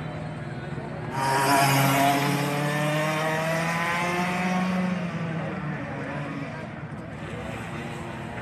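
A racing kart's engine passes close by: loud from about a second in, its note shifting as it goes, then fading over the next few seconds. Under it is a steady engine hum.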